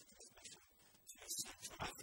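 Speech: a man lecturing into a lectern microphone.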